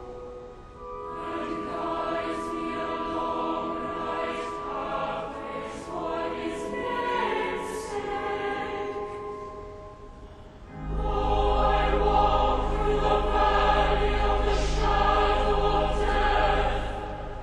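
A cathedral choir of boys and adults singing in a large reverberant nave. About eleven seconds in, a deep steady organ bass comes in beneath the voices and the sound grows louder and fuller.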